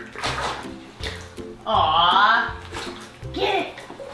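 Water splashing and sloshing in a plastic kiddie pool as an American alligator grabs a rope-and-tire dog toy in its jaws, over steady background music. About two seconds in, a high excited vocal exclamation is the loudest sound.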